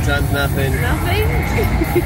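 Casino floor noise: a steady low rumble with a person's voice talking indistinctly through most of it. A faint steady high tone comes in about halfway.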